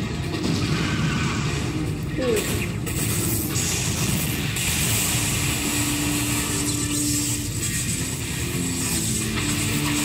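Monster-film soundtrack: a dense rumble of sound effects mixed with music, with long held notes coming in about halfway through.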